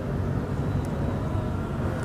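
Steady low rumble of outdoor background noise, with no clear single event.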